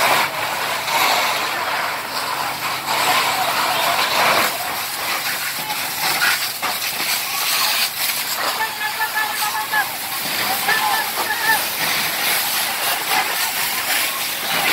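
Fire hose jet spraying water onto burning debris: a steady hiss and splash of water. Indistinct voices come through over it.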